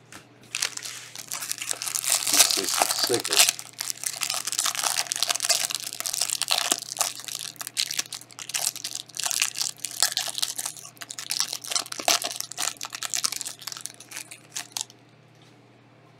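Plastic wrapper of a Panini Chronicles soccer card pack being torn open and crinkled by hand. It makes a dense crackling that stops suddenly about a second before the end.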